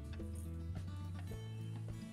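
Background music: held tones over a low bass line that changes note every half second or so.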